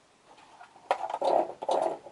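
Handling noise as a small plastic mini keyboard is picked up: a sharp knock about a second in, then two loud stretches of rubbing and clatter near the end.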